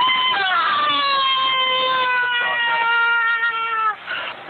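A woman's long cry of pain, one wail held for nearly four seconds on a high pitch that slowly falls, then cuts off just before the end.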